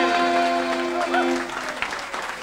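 Traditional Irish dance music ending on a sustained accordion chord that fades away, with applause and voices from the crowd over it.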